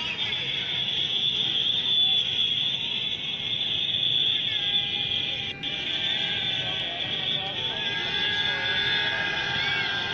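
Steady din of a large outdoor crowd at a floodlit cricket ground, a wash of many distant voices and background noise at an even level, with a brief drop about halfway through.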